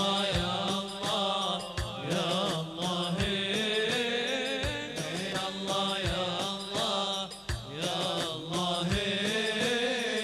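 Middle Eastern chanted wedding song: sung melody carried throughout over a low drum stroke about every second and a half.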